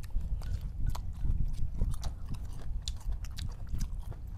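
Two people eating with chopsticks from ceramic bowls: chewing, with many small sharp clicks and taps of chopsticks on the bowls, over a steady low rumble.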